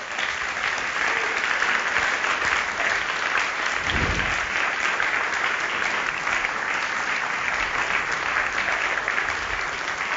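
Audience applauding steadily, with a brief low thump about four seconds in.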